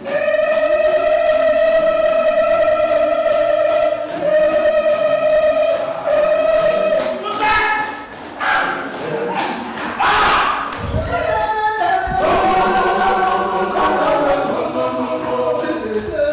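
Voices singing a long held note, then a few heavy thumps like stamping feet about halfway through, followed by several voices singing together in harmony.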